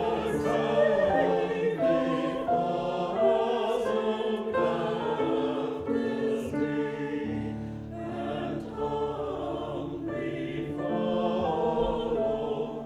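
Church choir singing the offertory anthem, several voices in parts moving through slow held chords, with long sustained low notes beneath.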